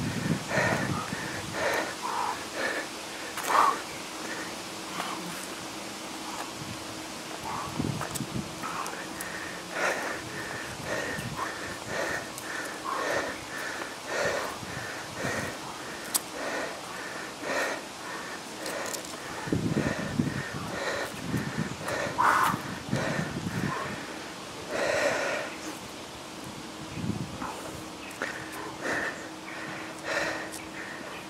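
A man breathing hard in short, repeated breaths, one or two a second, under the strain of walking lunges with a 25 kg sandbag across his shoulders.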